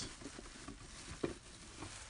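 Faint rustling with a few light, irregular clicks close to the microphone, one a little stronger about a second in: handling noise from the phone being held and touched.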